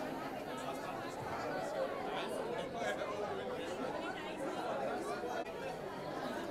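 Several people talking at once: lively crowd chatter that never pauses, with voices overlapping.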